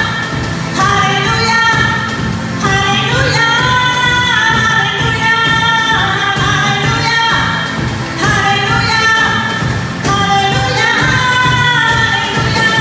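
A woman sings a Tamil Christian worship song live, holding long notes, backed by an electronic keyboard and a drum kit keeping a steady beat.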